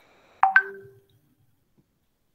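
A short electronic ping like a notification sound: two quick tones, the second higher, struck about half a second in and fading within half a second.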